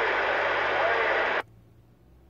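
CB radio receiving a station through heavy static hiss with a faint voice in it, the received audio cutting off abruptly about one and a half seconds in. After the cut only a low electrical hum remains.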